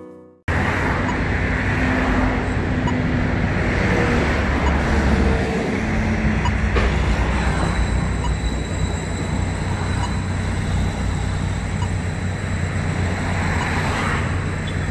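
Piano music cuts off about half a second in. Then steady road-traffic noise at a busy intersection: vehicle engines and tyre noise, with one engine's tone shifting in pitch a few seconds in.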